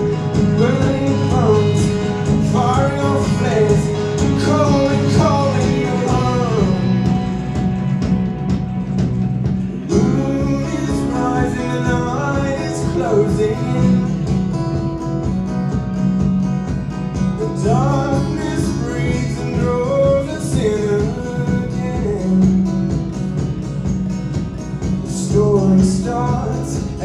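A live rock band playing: acoustic guitar, electric guitar, bass guitar and drums, with a male voice singing in phrases that come and go.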